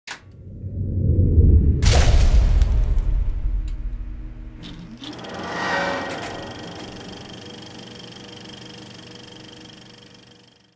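Sound effects of an animated intro: a low rumble swells over the first few seconds with a sharp hit about two seconds in, then a rising whoosh about five seconds in settles into a held ringing tone that fades out near the end.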